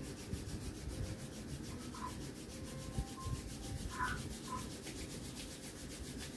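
A person rubbing the palms of both hands together, a steady dry rubbing that goes on throughout.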